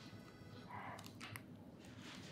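Faint mouth sounds of someone biting into and chewing a chocolate-coated sponge cake: a couple of soft clicks and light crunching rustles over quiet room tone.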